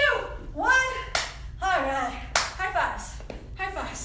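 A woman's breathless, excited vocalizing with no clear words, cut by a few sharp claps about a second apart.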